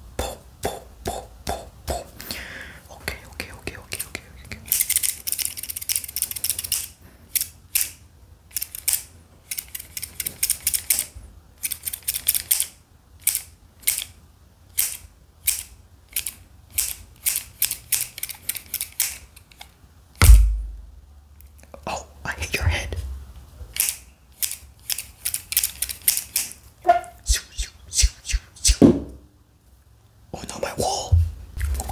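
Scissors with steel blades worked open and shut close to the microphone: a long, irregular run of sharp snips and metal clicks, with a stretch of blade scraping about five seconds in. A heavy low thump comes about two-thirds of the way through.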